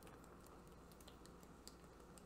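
Near silence: faint, irregular ticks over a low room hum while a man drinks from a plastic bottle.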